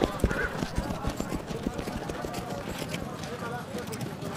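A horse's hooves beating in a quick run as it sets off, growing fainter.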